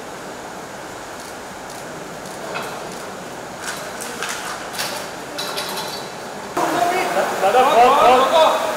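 Low background noise with a few faint clicks and clinks, then voices break in suddenly and loudly about six and a half seconds in.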